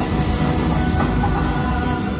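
Cinematic music-video soundtrack played through a TV soundbar: a deep, dense rumble under held musical tones.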